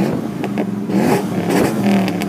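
Motor vehicle engine running and revving loudly, its pitch wavering slightly.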